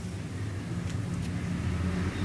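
Low, steady background rumble, with a couple of faint light ticks about a second in.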